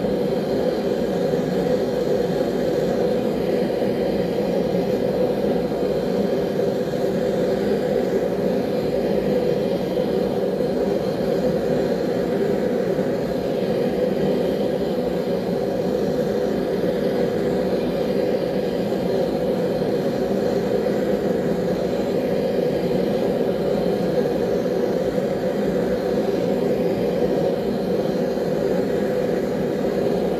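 A forge running with a steady, unchanging rushing noise, heavy in the low-middle range, while a knife blade is heated to non-magnetic ahead of an oil quench.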